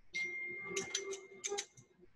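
Clothes hangers clicking against a metal garment rack as shirts are hung back up: a few sharp clicks about a second in and again near the middle-to-late part, over a faint steady high tone.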